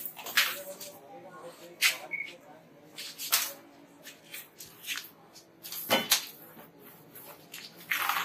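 A few short, sharp sounds, a second or more apart, as a defensive Indian rat snake held on snake tongs strikes at and bites a rubber slipper.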